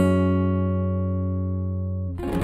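A guitar chord struck once and left to ring, fading slowly as its upper notes die away first.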